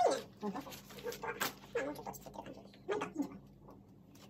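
A string of short whining cries, each falling in pitch, about eight in all, the loudest at the very start, typical of an animal whining.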